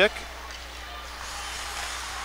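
Ice hockey rink ambience: a steady hiss of skates and play on the ice under a low, even hum from the arena.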